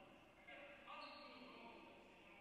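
Faint basketball bouncing on a hardwood gym floor, with two sudden hits about half a second and a second in, under faint voices.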